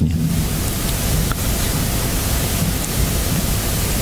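A loud, steady hiss of noise with no tone or rhythm in it.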